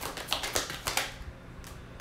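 A deck of tarot cards being shuffled by hand: a quick run of light clicks and flicks as the cards slide and strike one another, thinning to a few faint ticks after about a second.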